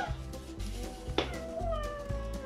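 Background music with a steady beat. About a second in, a high-pitched, meow-like squeal sweeps up, then holds as a long, slightly falling tone.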